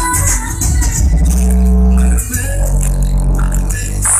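Music with heavy bass and a shaker-like rattle, played loudly through a 5.1-channel MOSFET amplifier and its speakers during testing.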